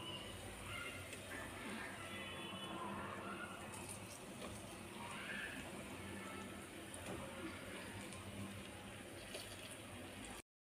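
Onion masala with boiled eggs frying in a pan, a faint steady sizzle.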